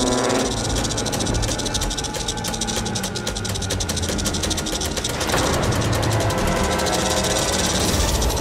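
Rapid, dry clicking and rattling sound effect of a giant centipede's legs skittering as it crawls, densest in the first five seconds, over background music.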